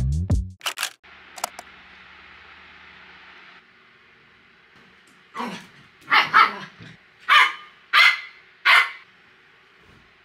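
A dog barking, about six short single barks spaced over the second half.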